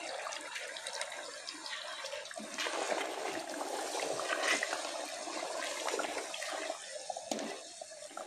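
Yogurt poured into a pot of chicken curry, then the curry stirred hard with a wooden spoon: wet sloshing and squelching of the thick liquid, louder once the stirring gets going about two and a half seconds in.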